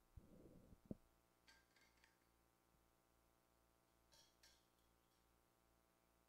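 Near silence: faint background of the game broadcast, with a brief low rumble and a click in the first second and a few faint short high sounds later.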